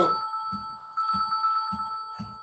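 A phone ringtone playing: steady high tones held over a low pulse that repeats about twice a second.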